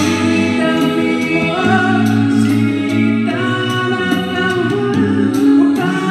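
A six-voice a cappella group singing in close harmony, with a sung bass line under the chords and a vocal percussionist keeping a steady beat with mouth drum sounds.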